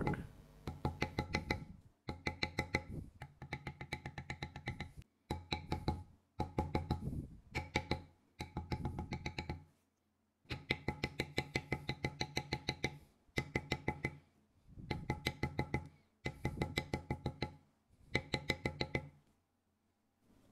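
Rapid taps of a mallet on a metal leather-stamping tool, texturing damp veg-tan leather on a stone slab, about six to eight strikes a second with a faint ring from the tool. The taps come in bursts of one to two seconds with short silent gaps.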